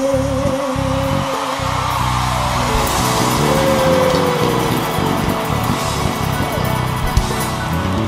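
Live pagode band music playing at full level, with a long held note in the first second or so and a steady, stepping bass line underneath.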